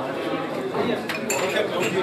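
Teacups and dishes clinking several times as they are handled, over a crowd of men talking.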